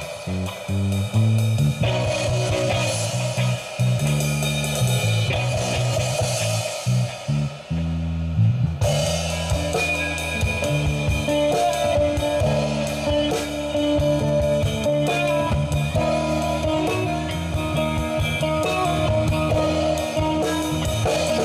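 A live rock band playing an instrumental passage: electric bass, electric guitar and drum kit. Moving bass notes under guitar and cymbals, with a change about nine seconds in, after which the guitar holds longer notes.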